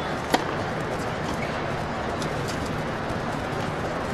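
A single sharp crack of a tennis racket striking the ball on a serve, about a third of a second in, over steady background noise from the stands.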